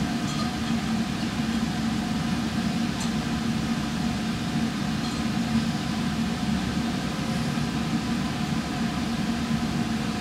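Laboratory fume hood exhaust fan running: a steady drone with a constant low hum.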